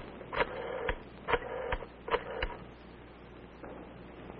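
Desk telephone being dialed: about six short, sharp sounds in the first two and a half seconds, then a quieter stretch.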